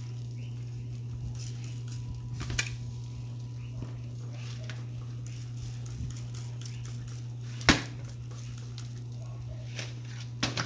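A metal utensil clinking and scraping against an aluminium sheet pan as large pieces of smoked pork are pushed and turned on it, with a few light clicks and one sharp, loud clank about two seconds before the end. A steady low hum runs underneath.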